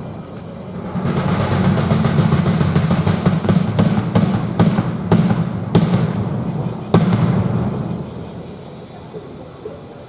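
Audience applause, with a steady low rumble underneath and a few sharp claps close to the microphone, dying away after about eight seconds.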